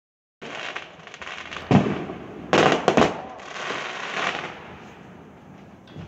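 Aerial fireworks going off: a dense run of small crackling pops, with three louder bangs between about one and a half and three seconds in, dying away toward the end.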